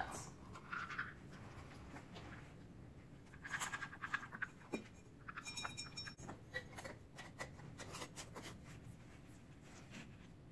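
Faint scraping, then a run of small clicks: chopped nuts scooped with a plastic measuring cup and poured through a metal canning funnel into a glass jar.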